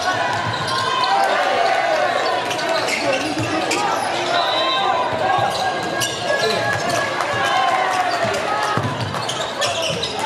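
Basketball game play in a large hall: a ball bouncing on the hardwood court amid players' and spectators' calls and shouts, with sharp knocks scattered through.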